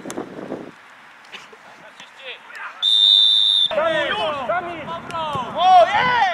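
A referee's whistle blown once, a single steady high blast just under a second long, near the middle. Right after it, several players shout at once.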